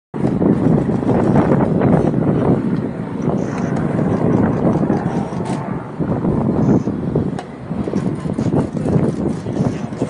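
Strong wind buffeting the microphones of an Insta360 X3 360-degree camera: a loud, gusting rumble that swells and dips.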